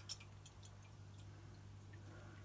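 Faint clicks of a belt buckle being handled, three small ticks in the first second, over a low steady hum.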